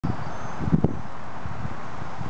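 A steady hum of distant road traffic with wind buffeting the microphone, and two brief thumps just under a second in.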